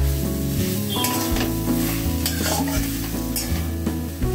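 Metal spatula stirring and scraping a spiced prawn and chhana stuffing as it sizzles in a metal kadai. Background music plays underneath.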